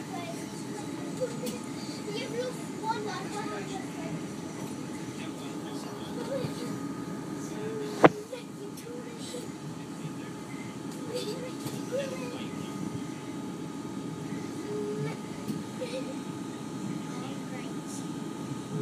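Interior running noise of a Class 450 Desiro electric multiple unit pulling away from a station, a steady rumble with faint steady tones above it. One sharp click about eight seconds in.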